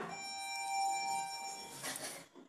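OTIS elevator arrival chime: one bell-like ring with several overtones, struck once and fading over about a second and a half as the car stops at the floor and signals its direction. A brief rush of noise follows near the end.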